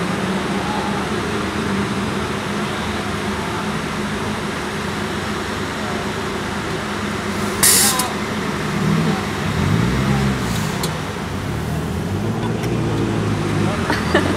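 Cars idling and creeping along at walking pace, under the steady chatter of a crowd, with one short, loud hiss about eight seconds in.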